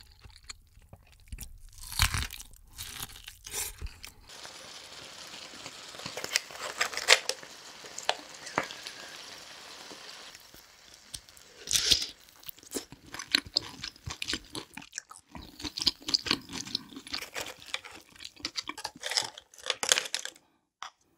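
Close-miked eating of seafood: crunching, wet chewing and mouth smacks in quick irregular clicks. The background hiss changes abruptly twice, as one eating clip cuts to the next.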